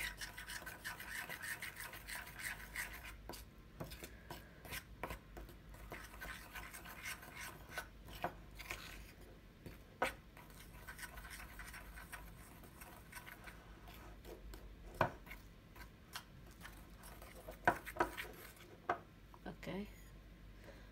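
Metal spoon stirring and scraping icing sugar with a little milk and vanilla in a ceramic bowl, mixing it into icing: a soft gritty scraping with repeated clinks and taps of the spoon against the bowl, a few sharper ones about halfway and near the end.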